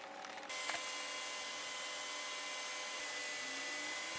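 Steady whirring hiss of a small electric motor or blower with a thin high whine, switching on suddenly about half a second in.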